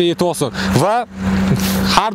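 A car running close by, its noise swelling into a rush in the second half, under a man's speech in the first second.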